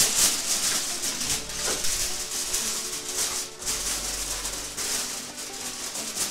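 Aluminium foil crinkling and crackling in irregular bursts as it is pressed down and crimped around the rim of a steamer pot to seal it.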